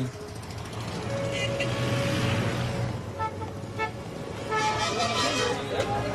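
Busy street traffic: a vehicle passes, its noise swelling and then easing, with several short horn toots. Voices rise near the end.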